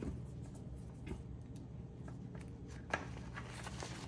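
Faint rustling and small clicks as a heated glove's fabric cuff and its battery pack are handled while the battery is fitted, with one sharper click about three seconds in.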